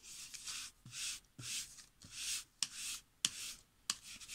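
A nearly dry distress ink pad rubbed back and forth along the edge of a sheet of ledger paper to age it: about six short hissing rubs, with a few light clicks in the second half.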